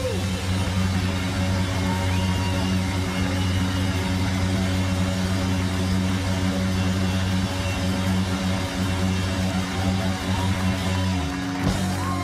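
Live rock band holding its closing chord, with steady low guitar and bass notes ringing on at a loud, even level. The chord breaks off near the end with one final hit as the song finishes.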